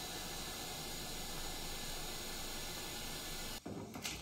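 Steady hiss of air from a vacuum forming table, cutting off suddenly near the end, followed by a couple of sharp clicks.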